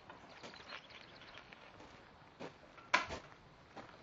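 Horse trailer side door being opened: a few light knocks and one sharp clank about three seconds in.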